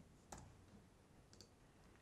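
Near silence broken by about three faint, short computer mouse clicks.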